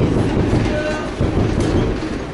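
Métro train running on the elevated viaduct overhead: a loud, steady low rumble of wheels on rails, with a faint whine partway through.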